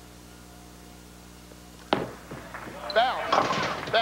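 Bowling ball striking the pins on a 2-4-10 split spare attempt, a single sharp crack about two seconds in, followed by voices reacting to a failed conversion. Before the hit there is only a faint steady hum.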